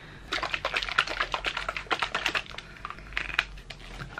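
Rapid clicking and rattling of a plastic medicine bottle and a purple oral syringe being handled. The clicks come thick for the first two and a half seconds, then a few scattered ones near the end.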